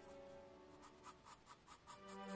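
Graphite pencil scratching on sketch paper in short, quick, evenly spaced strokes, about five a second, faint. Soft background music fades out within the first second.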